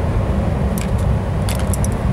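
Small metallic clicks of Knipex pliers working rubber seals and terminal parts out of a compressor terminal plate: a couple just before a second in and a quick cluster near the end. They sit over a steady low rumble.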